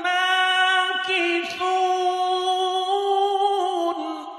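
A Quran verse chanted in melodic recitation by a single unaccompanied voice: long held notes with ornamented turns and a brief break about a second and a half in. The phrase ends near the end with a reverberant fade.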